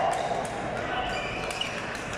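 Badminton rackets striking a shuttlecock, a few sharp cracks, over the chatter of voices in a large echoing sports hall.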